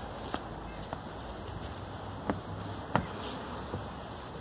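Footsteps on wooden deck stairs and boards: a handful of short, sharp knocks, irregularly spaced and under a second apart, the firmest two in the second half, over a steady faint background hiss.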